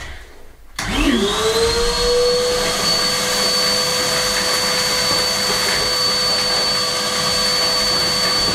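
Canister vacuum cleaner switched on a little under a second in: its motor whine rises quickly in pitch as it spins up, then it runs steadily with a high whistle while it hoovers the floor.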